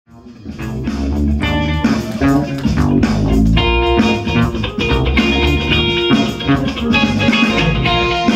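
A live rock band plays together: electric guitars, bass guitar, drum kit and keyboards. The music fades up quickly in the first second.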